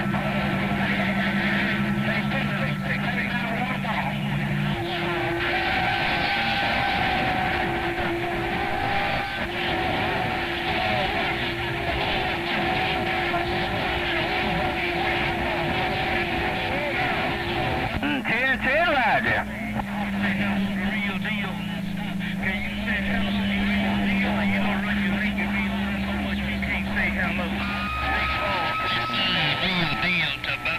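CB radio receiver tuned to 27.025 MHz playing skip from distant stations: a steady hiss of band noise with steady whistles at several pitches that come and go, and faint garbled voices. A brief warbling sweep comes about two-thirds of the way through.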